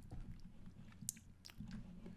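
A few faint, brief clicks over quiet room hum, the sharpest about a second in and again half a second later.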